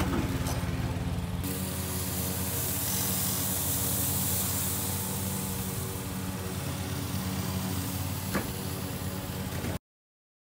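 Small engine of a stand-on lawn mower running steadily, with a single sharp click near the end.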